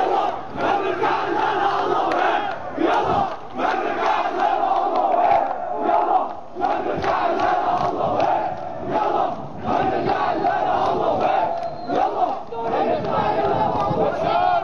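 A large protest crowd chanting and shouting together, many voices at once, loud and continuous, with brief dips between phrases.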